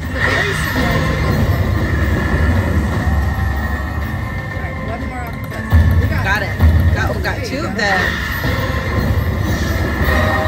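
A casino video slot machine playing its game music and reel-spin sounds, with two heavier low hits about six seconds in as feature symbols land.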